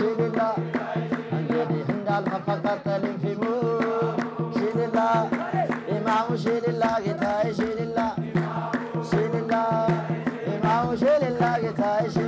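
Ethiopian Islamic devotional chanting (menzuma): a man's amplified lead voice sings over a crowd holding a steady low chant, with hand-clapping in a regular beat.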